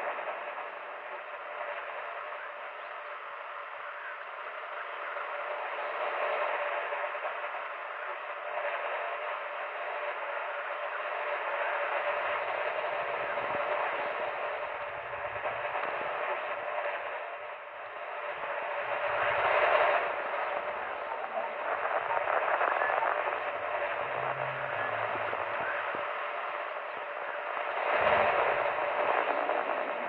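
Old-radio static: a continuous hiss with fine crackle, thin and narrow like sound from a vintage radio speaker, swelling louder about twenty seconds in and again near the end.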